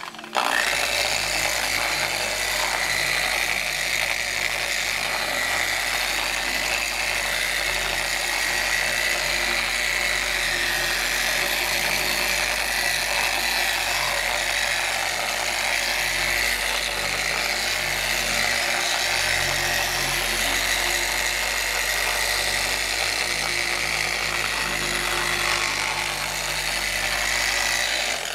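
Electric orbital polisher with a foam pad running steadily under load as it buffs the clear coat on a painted plastic motorcycle fairing at the final polish stage. It starts about half a second in and cuts off near the end.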